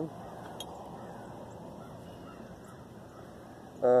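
Quiet outdoor background with faint distant bird calls.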